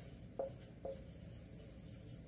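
Dry-erase marker writing on a whiteboard: two short, faint strokes of the felt tip against the board.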